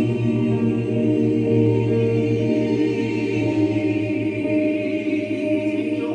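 A small gospel vocal group singing long, sustained chords in close harmony, accompanied by a Yamaha Motif keyboard.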